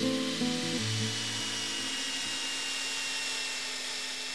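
Guitar music dies away within the first second as a power tool runs steadily, a dense hiss with a thin high whine that sinks slightly in pitch over the seconds.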